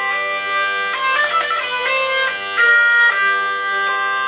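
Hurdy-gurdy played by cranking its wheel, with the drone strings retuned by the drone capo on the trumpet string. A steady drone sounds under the melody strings, which run through several quick note changes in the middle before settling on a held note.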